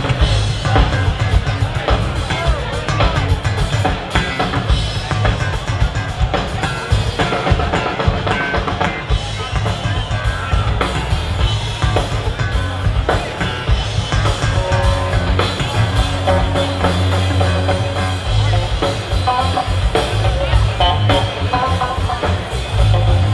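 Live rock band playing an instrumental passage: electric bass playing busy lines over a drum kit.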